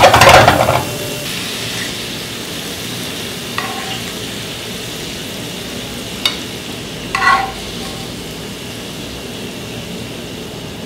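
Shrimp sautéing in a hot frying pan, sizzling steadily, with a loud burst in the first second as the pan is tossed. A few short clinks of a metal spoon against the dishes come later.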